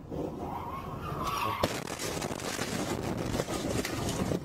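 A car skidding into the side of a semi-trailer: tyres squeal in the first second, a sharp crash comes about a second and a half in, and then a run of scraping and clattering metal and glass.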